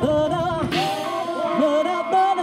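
Live band music: a sustained, gliding vocal melody sung over guitar and drums, with a burst of high hiss about three-quarters of a second in.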